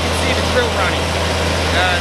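Truck-mounted well-drilling rig's engine running steadily, a low continuous drone.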